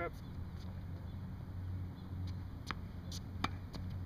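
A tennis ball bouncing on a hard court and then struck with a racquet on a backhand: two sharp knocks about three-quarters of a second apart, the hit louder than the bounce, over a steady low rumble.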